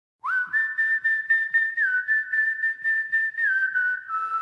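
Whistled melody opening a song: long held notes stepping between a few pitches, over an even pulse of about four beats a second.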